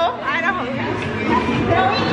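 Several people's voices talking over one another in a busy indoor room.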